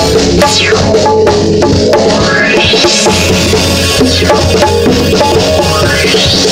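Hand-played LP City bongos in a live band groove with a drum kit, over steady held pitched notes from the band's other instruments.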